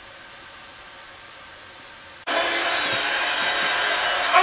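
Faint steady hiss, then a little over two seconds in a much louder, even rushing noise starts abruptly and keeps going.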